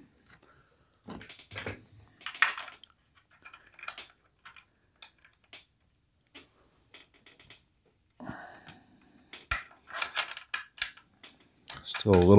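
Irregular small clicks, taps and scrapes of hands working the pilot lamp assembly inside a Fender amplifier's metal chassis, trying to unscrew it against a bit of resistance. The handling is sparse at first and busier in the last few seconds.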